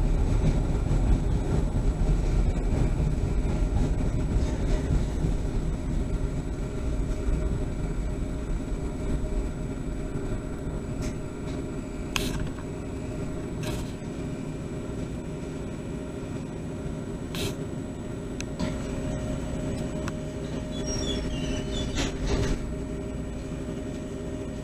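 Steady low rumble of a CTA Orange Line rail car running on the track, heard from inside at the front of the car. It grows quieter through the first half and is broken by a few sharp clicks in the second half.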